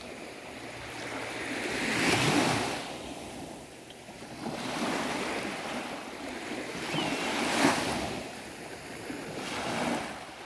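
Small waves breaking and washing up the beach, the rush swelling and fading about every two and a half to three seconds.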